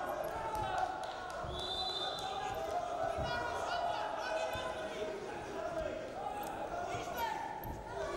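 Men's voices shouting in a large hall around a Greco-Roman wrestling bout, with a few dull thuds as the wrestlers step and grapple on the mat.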